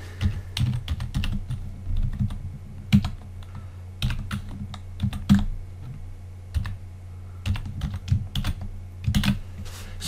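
Typing on a computer keyboard: irregular key clicks, with a steady low hum underneath.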